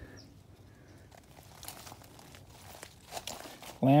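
Faint crunching and crackling of footsteps on dry fallen leaves and wood-chip mulch.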